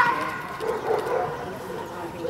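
German Shepherd vocalizing while it grips a helper's bite sleeve during protection work, with a loud pitched cry right at the start and then lower, wavering sounds.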